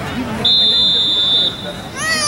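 A whistle blown once, a steady high-pitched tone lasting about a second, starting about half a second in.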